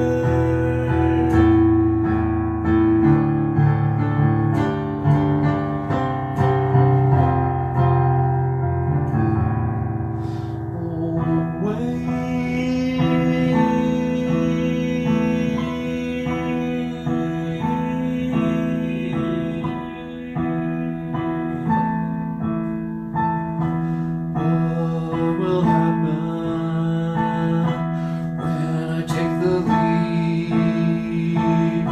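Roland electronic keyboard played in sustained chords, with a man singing along. About eleven seconds in the deep bass drops away and the playing carries on in a lighter, higher texture.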